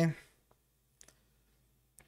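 Faint computer mouse clicks, two of them about a second apart, in near silence.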